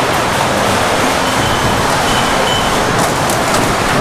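Loud, steady rushing noise, like machinery or moving air, with a faint thin high tone briefly in the middle.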